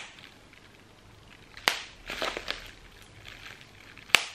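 Bubble wrap popped between the fingers: one sharp pop about a second and a half in, then a few softer pops and crackles of the plastic.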